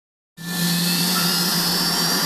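Helicopter turbine engine running steadily, a constant whine over a low hum, starting abruptly about a third of a second in.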